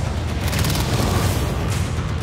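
Action film trailer soundtrack: loud music mixed with a heavy, steady low rumble of sound effects.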